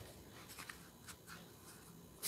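Faint rustling and a few light clicks of tarot cards sliding against each other as a deck is handled and shuffled in the hands.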